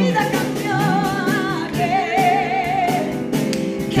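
Live worship music: voices holding long, wavering sung notes over keyboard and a cajón beat, a Spanish-language praise song.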